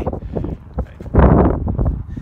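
Wind buffeting the phone's microphone as a loud, uneven rumble, with a strong gust about a second in.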